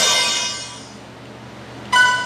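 Bright, bell-like musical notes: one struck note rings and fades over about a second, and a new short note starts at the very end.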